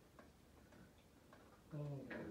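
Faint light ticking in a quiet room, a man's short "Oh" near the end.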